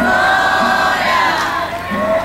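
A crowd of danjiri rope-pullers shouting and calling out together. A steady low beat repeats about twice a second underneath.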